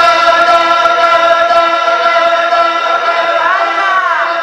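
A man's voice singing a naat unaccompanied, holding one long note, then turning it in a wavering ornament near the end.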